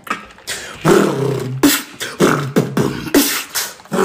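Beatboxing: rhythmic mouth percussion, with sharp hissing snare-like hits about every half second and a low hummed tone between them.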